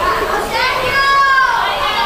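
High-pitched voices calling out in drawn-out cries that rise and fall in pitch, most likely chirigota performers speaking in exaggerated falsetto during their stage act.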